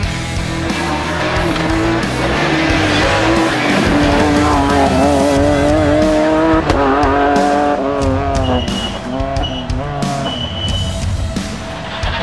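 BMW E46 M3 rally car's S54 straight-six engine pulling hard. Its pitch climbs steadily, drops sharply at a gear change about six and a half seconds in, then falls and rises again. Music plays over it.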